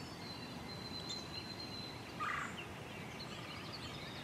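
A wild turkey gobbler gobbles once, a short rattling call about two seconds in, with songbirds singing high and thin around it.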